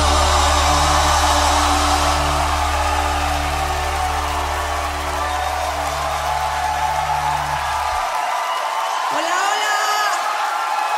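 A song's final held chord, with a steady bass, rings out over a cheering audience. The music stops about eight seconds in, leaving crowd cheering with a shout near the end.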